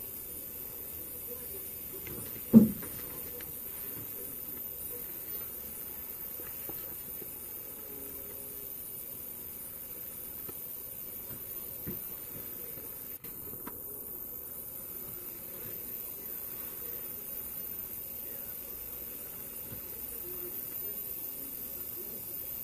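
Quiet room tone with a steady hiss, broken once by a single sharp knock about two and a half seconds in.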